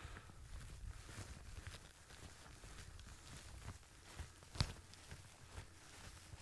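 Faint footsteps of a hiker walking down a slope of rough grass, with one sharper click about four and a half seconds in.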